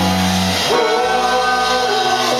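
Live rock band playing: electric guitars and drum kit with a male lead vocal.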